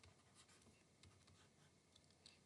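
Near silence, with faint scratches and taps of a stylus writing on a pen tablet.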